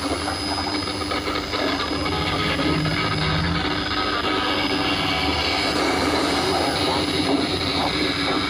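Shortwave broadcast on 13775 kHz heard through a Panasonic radio-cassette's speaker: steady static hiss with a constant low hum and a faint high whistle, the station's programme only faint and broken beneath the noise.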